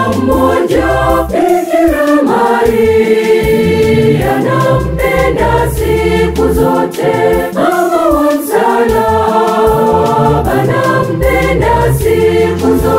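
Mixed choir singing a Swahili gospel song together, accompanied by an electric organ with a steady bass line.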